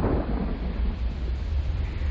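Deep, steady low rumble with a faint hiss above it, slowly dying away: a cinematic sound-design drone.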